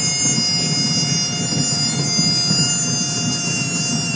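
Light aircraft's piston engine and propeller running steadily, heard inside the cockpit: a rough, pulsing drone with a steady whine on top, as the plane rolls along the runway after landing.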